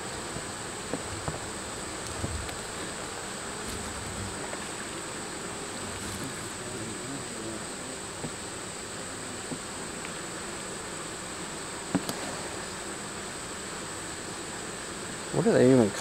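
Honey bees buzzing steadily around an opened hive: a continuous hum with faint rising and falling tones as single bees fly past, and one sharp click about three quarters of the way through.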